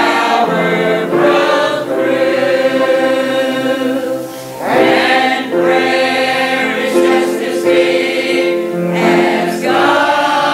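Mixed church choir of men and women singing a slow gospel hymn in held, sustained notes, with a short break between phrases a little over four seconds in.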